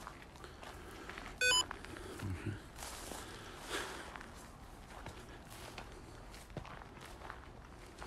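Footsteps pushing through long grass and weeds, with one short electronic beep about a second and a half in.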